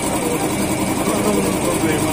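A small engine idling steadily, a fast even chugging, with faint voices underneath.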